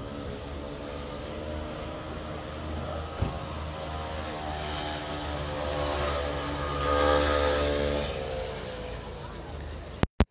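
A motor vehicle engine running close by, growing louder to a peak about seven seconds in and then fading away, with one sharp click about three seconds in.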